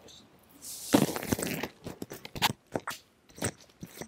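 Handling noise close to the microphone: a loud rustle about a second in, then a run of irregular sharp crackling clicks as fabric and small objects are handled at the chest.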